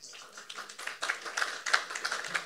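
Audience applauding: many hands clapping in a dense, irregular patter that builds up over the first second.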